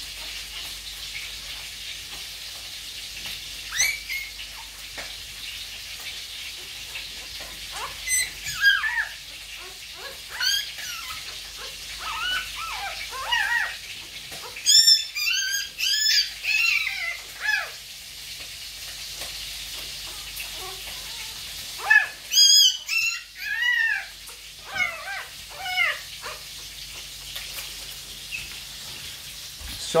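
Newborn puppy crying in short, high-pitched squeals that come in clusters, the cries of a pup separated from its mother outside the whelping crate. A steady hiss runs underneath.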